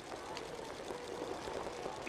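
Steady outdoor field ambience: a low noisy haze with faint, distant voices.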